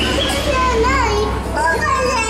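A toddler whining in a high, drawn-out, wavering voice, upset and protesting.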